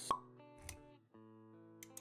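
Soft electronic intro music of sustained notes. A sharp pop sound effect comes right at the start, then a softer low thud, and the music drops out briefly about a second in before it resumes.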